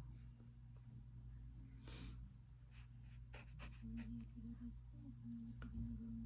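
Quiet room tone: a steady low electrical hum with a few faint, brief scratches and clicks.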